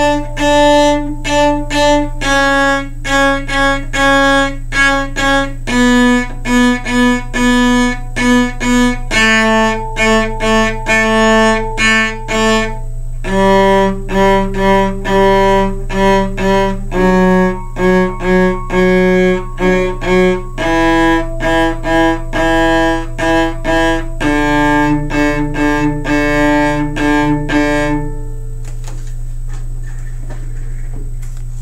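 Cello playing the D major scale descending, each of the eight notes bowed as a group of short repeated strokes in the "Run Pony Hop Bunny" rhythm, stepping down in pitch about every three and a half seconds and stopping near the end. A steady low hum runs underneath.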